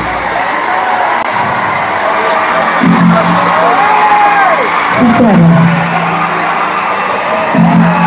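Concert crowd cheering and whooping, with a singer's voice calling out long notes over the PA several times; the band's deep bass cuts out just after the start.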